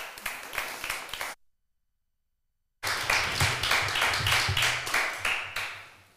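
Audience applause at the end of a lecture: a dense patter of hand claps. The sound cuts out completely for about a second and a half, then the applause returns and fades away near the end.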